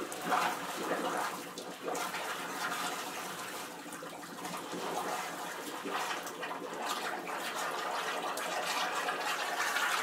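Sewage welling up out of a wall-mounted drinking fountain's drain and running down the wall onto the floor, a steady, uneven splashing of water. The drain has no backflow valve, and a sudden heavy rain is forcing sewage back up through it.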